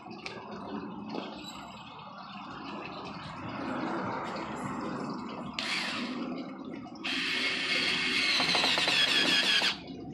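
Cordless drill driving a screw into a wooden block: a short burst of the motor about six seconds in, then a steady run of about three seconds that stops suddenly near the end.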